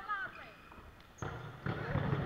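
Dodgeballs hitting the sports hall floor: two impacts, about a second in and again half a second later, after a brief bit of voice at the very start.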